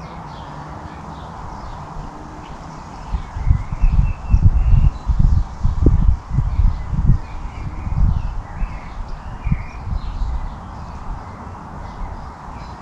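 Birds calling faintly over a steady outdoor hiss. From about three seconds in, a run of low, irregular rumbling thumps lasts about seven seconds and is the loudest sound.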